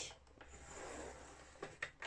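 Paper trimmer's scoring head sliding down its rail, scoring a fold line into a sheet of scrapbook paper: a faint rubbing swish, then two light clicks near the end.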